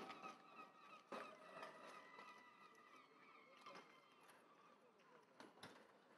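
Near silence: the echo of a shouted drill command fades away, with a few faint knocks about a second in and near the end.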